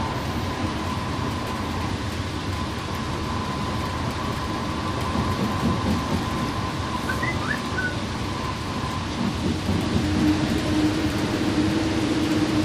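Cabin noise inside an express coach cruising at highway speed: steady engine and tyre rumble. It gets a little louder, with a steady low hum added, near the end as the coach enters a road tunnel.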